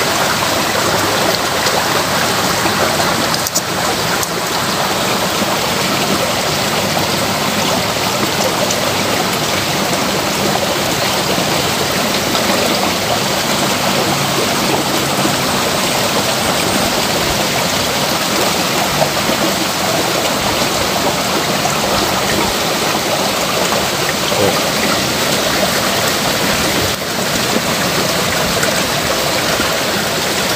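Water in a small rice-paddy ditch running over stones into a rocky pool: a steady babble of flowing water.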